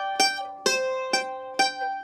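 Mandolin played slowly, single notes picked about twice a second, four in all. The high G, fret three on the E string, is held down and keeps ringing under the other notes to carry the sustain.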